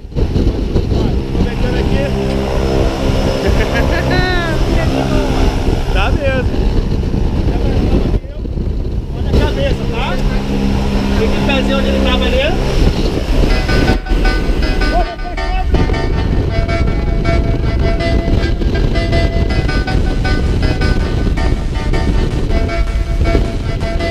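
Propeller engine of a single-engine jump plane running loudly, with voices calling over it. The sound breaks off abruptly a few times as the footage jumps from the ground to the cabin in flight.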